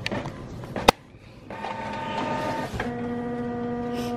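A sharp click about a second in, then a small electric motor whirring with a steady whine, stepping down to a lower pitch partway through.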